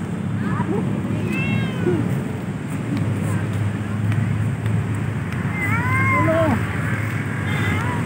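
Black-and-white domestic cat meowing several times, short rising-and-falling calls, the loudest about six seconds in, over a steady low background rumble.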